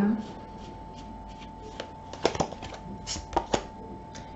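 Tarot cards handled in the hands, with sharp card flicks and snaps in two short clusters, a little over two seconds in and again about three seconds in.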